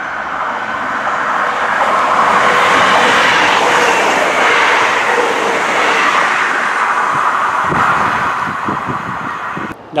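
An East Midlands Railway Class 158 diesel multiple unit, two units coupled, passing through the station at speed. The noise of its wheels and diesel engines swells to a peak in the first few seconds, holds, then slowly fades.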